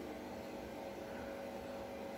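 Front-loading washing machine running through a wash cycle: a steady hum of several fixed tones over a soft even whirr.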